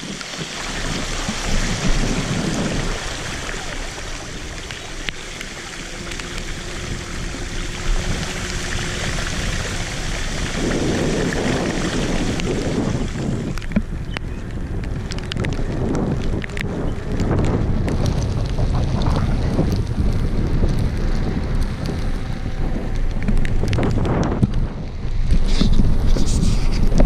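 Mountain bike tyres running through shallow floodwater on a paved trail, a steady loud splashing hiss. About halfway through the hiss stops and gives way to a lower tyre rumble on wet asphalt, with wind buffeting the camera microphone and scattered clicks.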